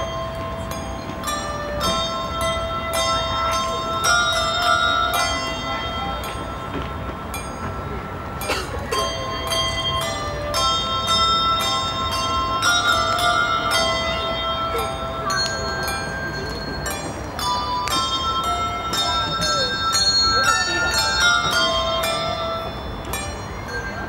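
Handbell ensemble playing a piece: many handbells struck in quick succession, their clear pitched tones ringing on and overlapping into chords.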